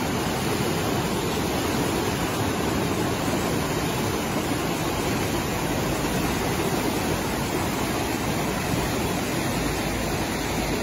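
A river in flood, a fast, muddy torrent of high water after heavy rain, rushing in a steady, unbroken roar.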